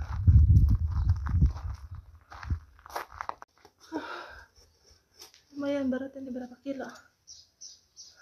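Low rumbling handling noise for the first two and a half seconds as the phone is carried pressed against a large armful of fresh coriander. It is followed by short stretches of a high-pitched voice near the middle and again toward the end.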